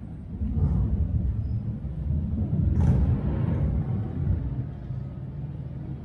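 A low, rumbling outdoor noise, louder through the middle, with a couple of brief sharper scuffs about a second in and near the halfway point.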